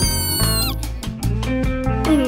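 A cartoon cat's meow: one drawn-out high call that drops off about three-quarters of a second in, over cheerful background music with a steady bass line.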